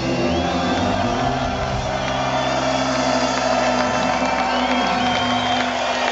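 Live ska band holding its closing chord, with the crowd cheering and whooping over it; the low notes of the chord stop about four to five seconds in.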